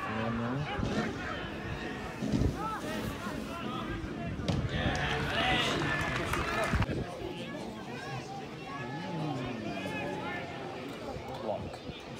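Players and spectators shouting and calling out over one another at a live football match, with a couple of dull thuds.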